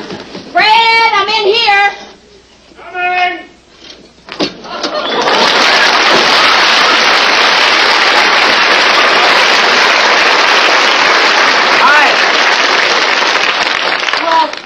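Studio audience applauding: a dense, even clatter of clapping that swells up about five seconds in and holds steady and loud to the end. Before it come a couple of short vocal exclamations.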